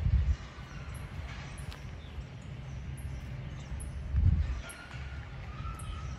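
Outdoor microphone noise while walking across a lawn: a steady low rumble of wind and handling, with two louder bumps, one at the very start and one about four seconds in. Faint bird chirps sound in the background.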